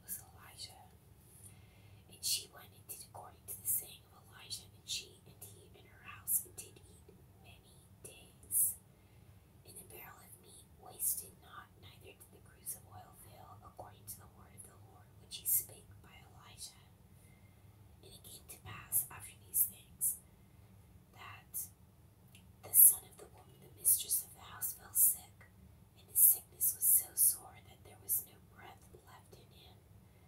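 A person whispering Bible verses aloud: soft breathy phrases with sharp hissing s-sounds and short pauses between them.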